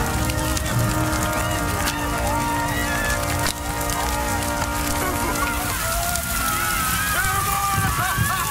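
Film soundtrack of rain pouring down, under music with long held notes, with excited wavering shouts of people greeting the rain.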